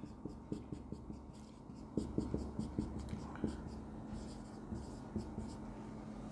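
Marker writing on a whiteboard: a run of short, faint strokes and small taps as letters are drawn.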